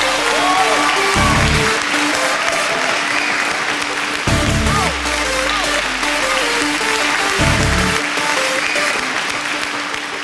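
Studio audience applauding over loud stage music, with a heavy bass hit about every three seconds.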